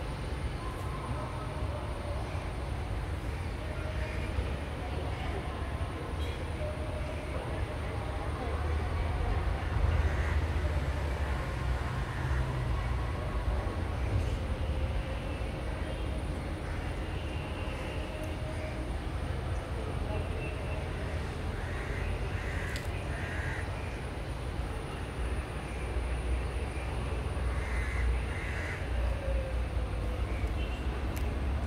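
Outdoor ambience: a steady low rumble, faint scattered voices, and a bird calling a few short times about two thirds of the way through.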